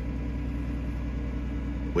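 Case IH Puma 165 CVX tractor's six-cylinder diesel engine idling steadily, heard from inside the closed cab.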